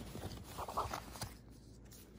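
Cotton cargo shorts and their hang tag being handled: faint scratchy rustling of fabric, with a short click about a second in.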